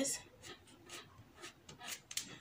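White tailor's chalk scratching short marks on fabric: several faint strokes.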